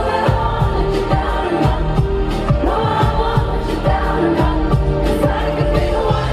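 Live pop concert music: a female lead vocal over a full band, with a steady drum beat of about two hits a second.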